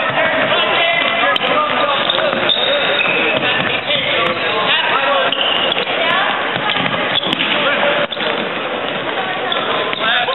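Basketball dribbling on a hardwood gym floor during a game, under a steady hubbub of crowd and player voices.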